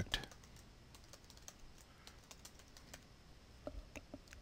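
Faint typing on a computer keyboard: a quick, irregular run of small keystroke clicks as a word is typed, with a couple of slightly louder clicks near the end.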